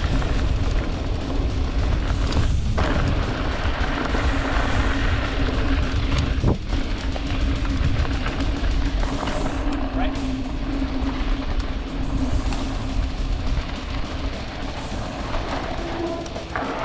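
Riding noise from a mountain bike on a dirt trail: wind rumbling on the camera microphone and tyres rolling over loose dirt, with a couple of brief knocks. Music plays over it.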